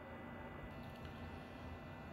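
Quiet room tone: a faint steady hum with a thin high tone, and no distinct sound event.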